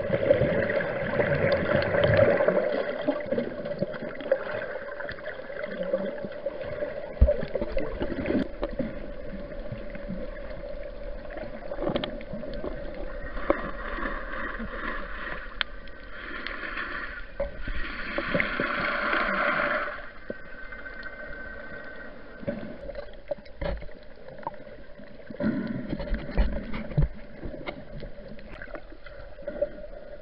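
Muffled underwater sound from a camera held below the surface while snorkelling: water swishing and gurgling, with a steady hum underneath that is strongest at the start. About two-thirds of the way through, a louder hissing stretch cuts off suddenly.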